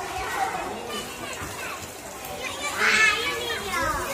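Children's voices chattering and calling out while playing, with one loud, high-pitched shout about three seconds in.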